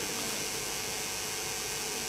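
Steady background hiss with a faint electrical hum, even throughout, with no distinct event.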